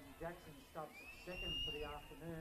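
Faint voices of people talking at the ground, with a single long high whistled note that rises and then holds for about a second, starting halfway through.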